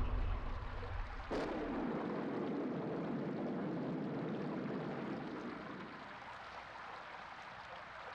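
The tail of a music track dies away in the first second, then running water starts suddenly and slowly fades out.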